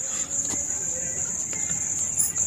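Crickets chirping in a steady, high-pitched chorus that never lets up.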